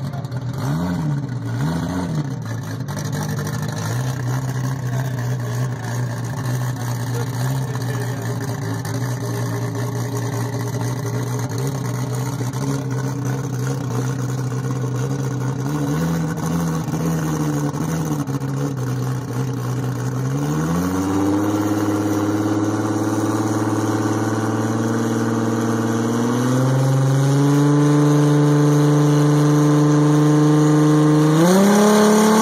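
Toyota Supra MkIV's 2000-horsepower engine idling with a few short blips of the throttle. About 21 seconds in, the revs rise sharply and are held steady, then step up again about 27 seconds in, held on the start line before a drag launch.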